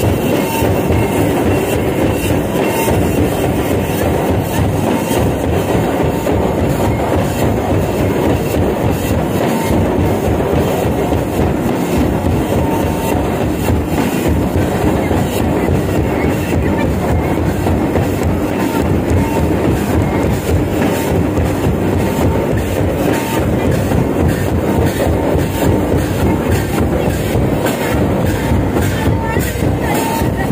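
Loud, distorted music for a Santali lagne dance, with a steady repeating drum beat running throughout.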